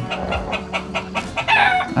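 A rooster crowing, the call strongest in the second half.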